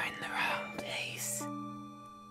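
Background music of soft, held chords that change about one and a half seconds in, under a man's low, breathy voice finishing the word "not" with a breath after it.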